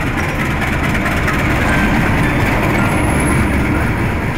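Passenger train behind a diesel locomotive running past a station platform: a loud, steady rumble of the carriages and wheels on the rails.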